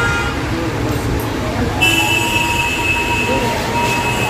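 Road traffic ambience with indistinct voices of people nearby. A high, steady tone sounds about halfway in and holds for about a second and a half.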